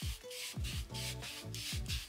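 A handheld crystal hair eraser rubbed quickly back and forth over the skin of the lower leg: a dry rasping scrape of short strokes, about five a second. The scrape is the crystal pad abrading away fine leg hair.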